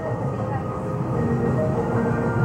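Steady rushing background noise, with faint voices murmuring in the background.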